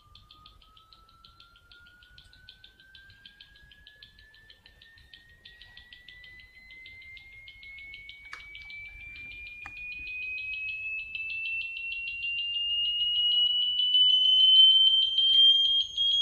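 Buzzer driven by a waveform generator sweeping upward in frequency: a single thin tone rising slowly and steadily in pitch. It starts faint and grows much louder over the last few seconds as the sweep nears the buzzer's resonance.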